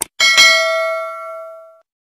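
A click, then a notification-bell sound effect: a bright bell ding struck twice in quick succession that rings out and fades over about a second and a half.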